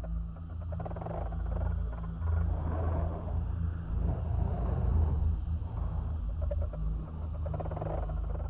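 Dark horror sound-design ambience: a deep, steady low rumble with rougher, rasping layers in the middle range that swell and ebb over it.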